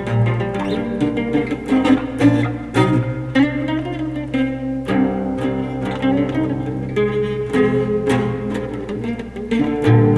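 Solo mandocello, a bowl-back instrument with paired strings, picked continuously: a melody over deep low notes, the notes running on without a break.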